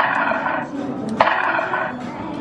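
Two harsh electronic sound effects from an arcade shooting gallery's speakers, about a second apart, each starting with a sharp crack and trailing off in a rough noise for under a second, as the game answers shots from its toy rifle.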